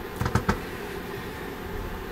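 A pause in talk: three or four short, soft clicks within the first half second, then steady low room noise.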